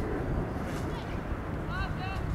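Wind rumbling on the microphone over distant shouts from players on the pitch, with a short high-pitched call near the end.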